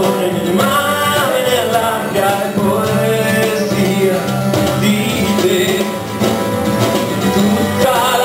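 A man singing with guitar accompaniment in a live song performance.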